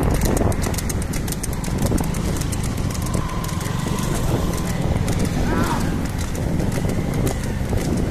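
Hooves of a water buffalo clopping on asphalt in a quick steady rhythm as it pulls a racing cart, over the rumble of wind and a motorcycle running alongside.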